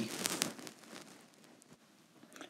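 A few light clicks and a brief scrape of kitchen utensils and dishes on the counter in the first half second, fading to near silence.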